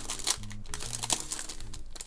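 Clear plastic card sleeve crinkling in the hands, with irregular crackles as a card is handled inside it, over background music.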